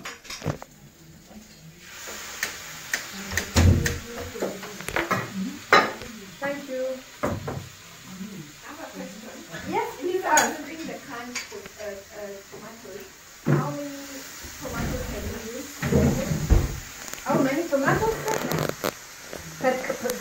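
Metal cookware and utensils clinking and knocking in short, irregular clicks, as a tin can and stainless steel pans are handled on a stovetop.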